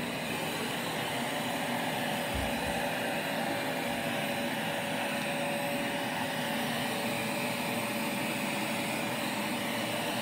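Vacuum cleaner running steadily, a constant whir with a steady tone, being pushed over a rug.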